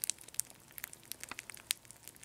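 Rice Krispies Treats cereal crackling in freshly poured milk, its 'snap, crackle, and pop': a faint, irregular scatter of tiny crackles and pops.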